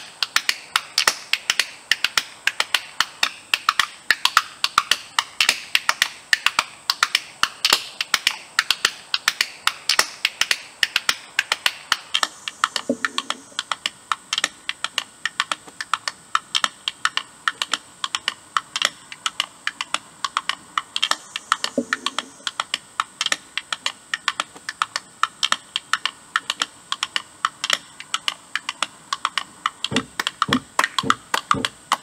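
Hand percussion clicking in a quick, steady rhythm, several sharp clicks a second, with two duller low knocks, one a little before halfway and one a little past it.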